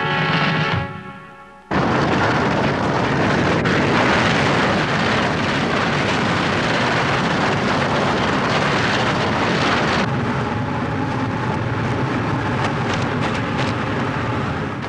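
Music fades out, then about two seconds in a loud, steady roar of a flame burner blasting over the turf starts suddenly and holds on. Faint music tones come in under the roar in the last few seconds.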